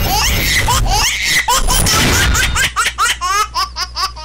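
Laughter sound effect in a comedy show's title sting: high-pitched laughs that turn into a run of quick 'ha-ha-ha' pulses in the second half, over a steady low music bed.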